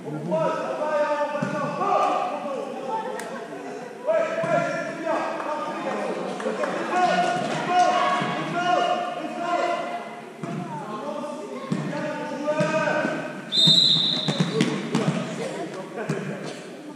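A basketball bouncing on a sports-hall floor amid people's voices calling out, in a large hall. About three-quarters of the way through comes one short, loud blast of a referee's whistle.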